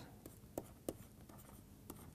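Faint scratching and a few light taps of a stylus writing on a pen tablet.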